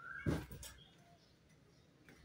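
A cloth backpack handled and swung up onto a table: a short rustle and thud about a quarter second in, then quiet room.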